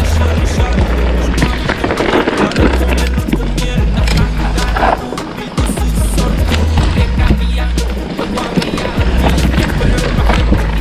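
Mountain bike rolling fast down a dirt and stony singletrack: steady tyre rumble with frequent sharp rattles and knocks from the bike over the rough ground. Background music with a sustained bass line runs underneath.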